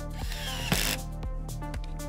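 Cordless drill driving a screw through a steel hinge mounting plate into a panel: a short run of under a second near the start, with a falling whine and a louder burst at the end. Background electronic music plays throughout.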